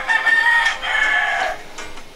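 A rooster crowing loudly: one crow in two long held parts lasting about a second and a half, its last note falling away at the end.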